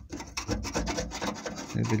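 A thin metal tool scraping and picking packed dirt out of a small clogged drain channel in the van's painted sheet-metal body, an irregular rasping with scratchy clicks. A man's voice starts near the end.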